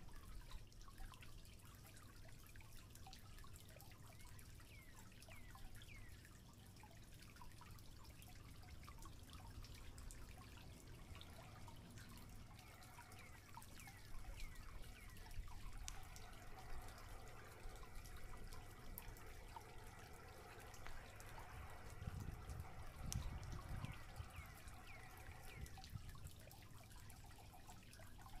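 Faint outdoor ambience: scattered short chirps, joined from a little past halfway by a steady drone of several high tones, over a low rumble.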